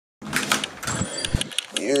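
A run of quick clicks and knocks from handling noise as the camera is moved about, with a voice saying "yeah" near the end.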